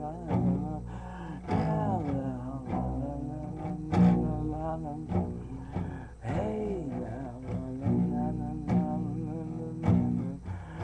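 Acoustic guitar played with strums and sustained notes, the sharpest strum about four seconds in, under a man's wordless singing that glides up and down in pitch.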